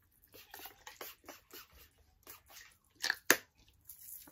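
Pump-spray perfume bottle being spritzed over and over in a quick run of short sprays, with two of the loudest about three seconds in.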